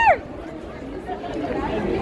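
A woman's loud, high held cheer trails off with a falling pitch right at the start. It gives way to a street crowd's quieter chatter.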